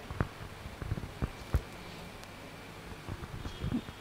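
Quiet room tone in a hall with a few faint, scattered clicks and knocks, a few more of them near the end.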